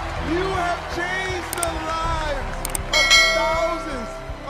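Excited, emotional voices over a music bed; two sharp clicks and then a bright ringing bell chime about three seconds in, the sound effect of a subscribe-button animation.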